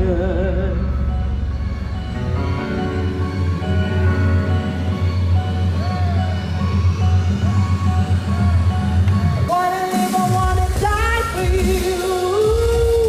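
A live band playing with a woman singing into a microphone, over a strong bass line. There is a sudden change about nine and a half seconds in, after which her voice comes back clearly.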